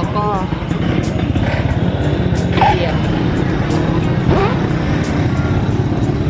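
A motor vehicle engine running close by, a steady low rumble with street noise.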